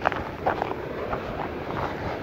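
Wind buffeting a chest-mounted camera's microphone: a steady rush with a low rumble, with a few faint brief rustles.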